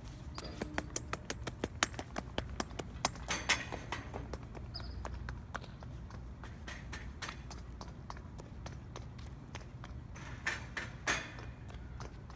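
Footsteps on stone paving: quick, sharp clicks of shoes striking the slabs, several a second for the first half, sparser later.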